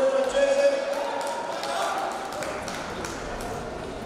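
Indistinct voices in a large arena hall, with a few short knocks and thuds.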